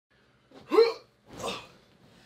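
A man's short vocal noise with a quick upward swoop in pitch, followed about half a second later by a softer, breathy huff.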